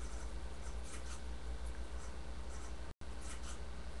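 Steady low hum with faint scattered rustles and light ticks. The sound cuts out completely for an instant a little before three seconds in.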